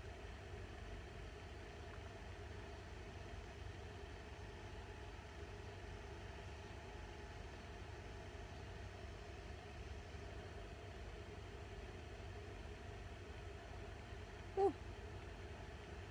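Steady low background hum with a faint even hiss, unchanging throughout, and one brief faint sound a little before the end.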